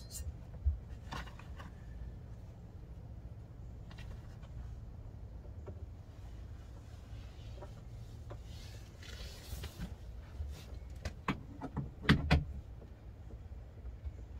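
Scattered clicks and knocks as a camper's J-pole (shepherd's hook) is handled at a pop-up camper's bunk end, with a brief rustle about nine seconds in and the loudest cluster of knocks near twelve seconds, over a low steady hum.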